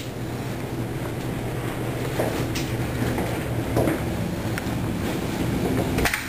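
A steady low machine hum, with a few faint short knocks over it.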